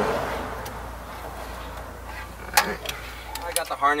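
Plastic wiring-harness connectors and wires being handled and plugged together behind a car stereo head unit: a few sharp clicks, then a quick cluster of clicks near the end as the harness goes in. A low steady hum underneath stops shortly before the end.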